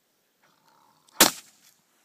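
A single rifle shot, sharp and loud, a little over a second in, with a short ring after it: the finishing shot into a wounded caribou bull.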